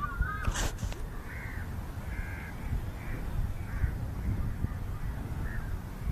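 Wind rumbling on the phone's microphone, with a wavy whistled bird call at the start and a string of short, caw-like bird calls about once a second after it. A brief knock sounds about half a second in.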